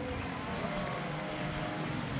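Steady background hum of a machine, with a few faint steady tones over an even haze of outdoor noise.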